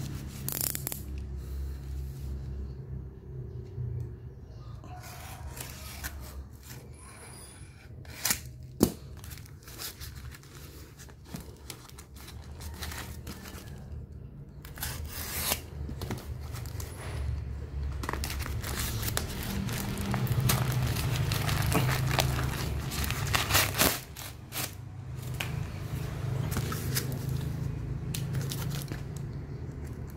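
Black plastic courier mailer being cut with a utility knife and torn open by hand: irregular crinkling, ripping and scraping of plastic wrap with scattered sharp crackles, over a steady low hum.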